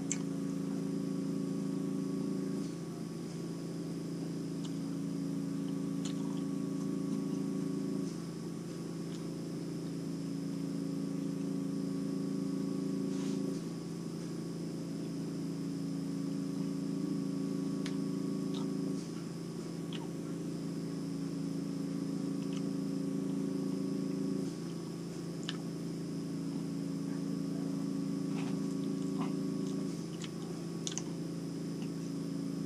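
A steady low machine hum that switches back and forth between two tones every five to six seconds, with a few faint scattered clicks.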